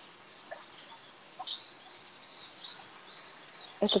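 Small bird chirping: a run of short, high chirps, about two a second, over a faint steady hiss.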